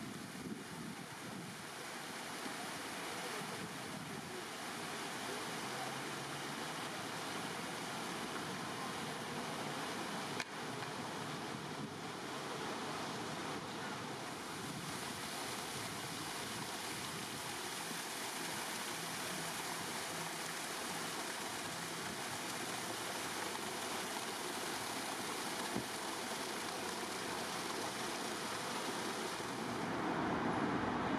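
Large stone fountain's water jets splashing into the basin and running down its stepped cascades, a steady rushing with one short click about ten seconds in.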